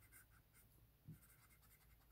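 Faint scratching of a Sharpie Magnum marker's broad felt tip colouring in on paper, in a run of short, irregular strokes.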